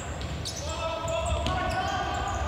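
Sports-hall crowd chanting over a low echoing rumble, with sharp knocks of the futsal ball being kicked on the wooden court about half a second and a second and a half in.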